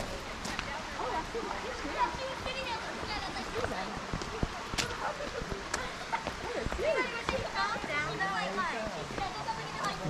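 Faint, indistinct voices of people talking at a distance over a steady background hiss, with a few sharp clicks.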